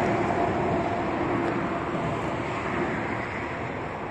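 Traffic on the highway bridge overhead: a steady rush of tyre and engine noise, loud at first and slowly fading.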